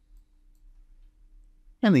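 A faint computer mouse click near the start over a quiet room with a faint steady hum, then a man's voice begins near the end.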